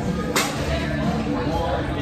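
Restaurant dining-room background of distant chatter and hum, with one sharp clack about a third of a second in.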